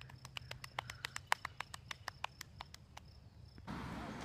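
A run of sharp, quick clicks that gradually slow down, about nine a second at first and about five a second by the end, stopping about three seconds in.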